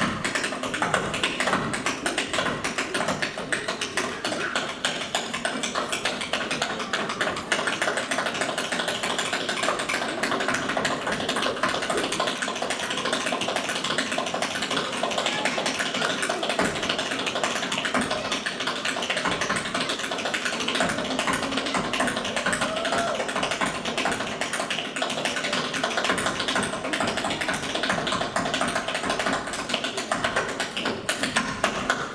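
Tap shoes striking a stage floor in a fast, continuous flurry of rhythmic taps.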